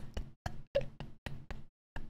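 A man laughing in short, separate breathy pulses, about four a second, with brief silences between them.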